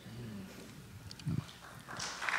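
Quiet hall with faint voices and a brief bump from a table microphone being handled, about a second and a half in. Applause begins to rise near the end.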